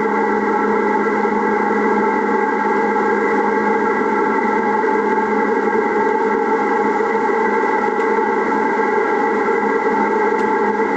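Steady, dense drone of several sustained tones layered over a rushing hiss, unchanging throughout: a computer-processed field recording of a building's ventilation system, played as a sound-art piece.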